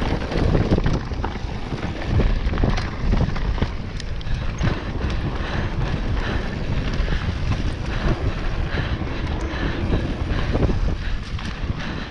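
Mountain bike ridden fast down a dirt singletrack: wind rushing over the microphone, with tyre rumble on dirt and frequent rattles and knocks from the bike over rough ground.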